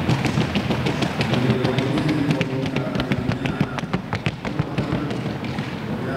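Colombian trocha horse's hooves striking the ground in the gait's fast, even four-beat patter of sharp clicks, over background music.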